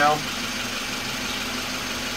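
Mazda engine idling steadily, with an even, unchanging hum.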